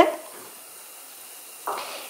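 Faint steady hiss of sweetened water heating in a saucepan on low heat, with a short breathy sound near the end.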